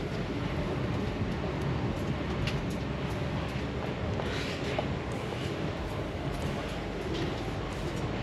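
Steady low rumbling ambience of an underground railway station, with a few faint ticks and no clear rise or fall.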